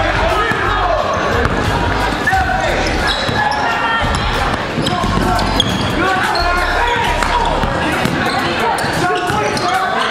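A basketball being dribbled on a hardwood gym floor during a game, under overlapping calls and chatter from players and spectators.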